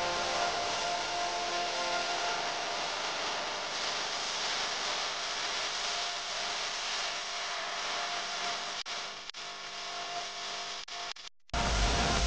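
A wooden spatula stirring and scraping sliced onions around an aluminium pressure-cooker pot: a steady rustling, scraping noise that breaks off about a second before the end.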